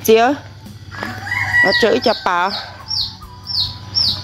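A rooster crowing in the background, then several short, high, falling chirps near the end.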